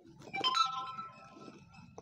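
A single drawn-out animal call, starting about half a second in and holding for about a second before fading, with a sharp click near the end.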